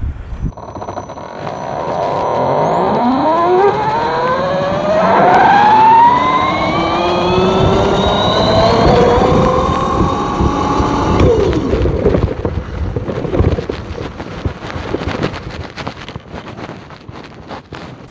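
Homemade 15 kW electric bike's motor, run by a Hobbywing Platinum 200A speed controller, whining under hard acceleration: several tones climb together in pitch for about seven seconds, then hold and fade away about eleven seconds in. After that come wind and road rumble with repeated knocks as the bike slows over a rough dirt road.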